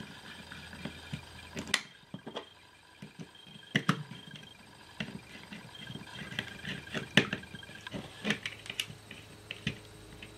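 Irregular light clicks and taps of small parts being handled and fitted by hand into a toggle switch's plastic housing, a few sharper clicks standing out among softer ones.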